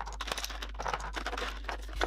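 Glass nail polish bottles clicking and clinking against each other and the plastic drawer organizer as hands rummage through them, a quick irregular run of small clicks.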